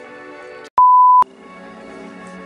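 A single loud beep, one pure steady tone about half a second long that cuts in and out sharply, of the kind dubbed over a flubbed word as a censor bleep. Background music runs under it.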